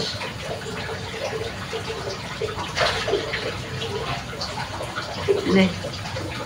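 Steady rushing of water in the background, even throughout, with a man's voice briefly saying a word near the end.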